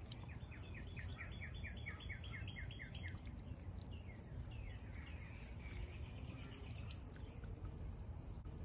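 A small solar fountain pump's jet of water splashing and dripping back onto the water in a stone-filled pot, faint and steady. Over it a bird gives a quick run of falling chirps, about five a second, for the first three seconds, then a few more later.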